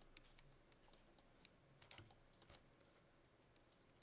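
Near silence: room tone with a few faint, irregular clicks of computer keys.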